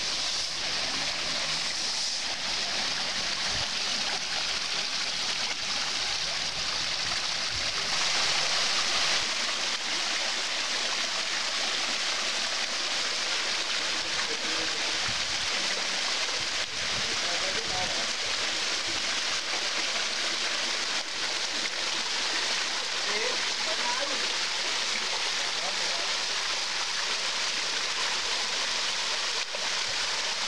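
Water pouring down an artificial tiered rock waterfall into shallow pools: a steady splashing rush that keeps an even level throughout.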